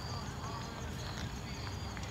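Quiet outdoor background: a low steady rumble with a few faint, distant voice-like calls.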